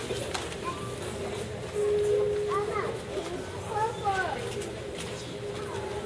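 Indistinct murmur of children and adults talking in a hall, with scattered short, high-pitched children's voices rising and falling over it.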